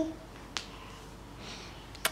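A single sharp click about half a second in, over the quiet background of a small room, just after a short vocal sound at the very start.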